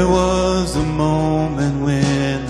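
A man singing lead vocal in a slow worship song, with held notes that slide between pitches, over acoustic guitar and a sustained low bass from the band.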